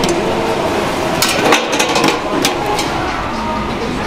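Stainless steel buffet pans and serving utensils clinking and clattering, a few sharp knocks bunched about one to two and a half seconds in, over the steady din of a busy serving line.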